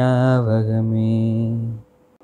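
A man singing, holding one long low note that cuts off suddenly near the end.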